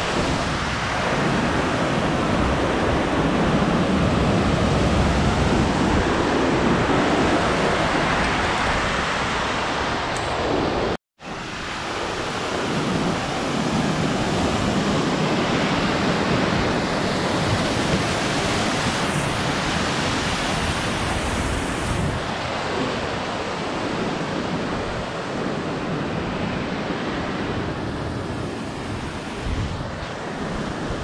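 Mountain torrent rushing as steady loud water noise, with wind buffeting the microphone; the sound breaks off completely for a moment about eleven seconds in, then carries on.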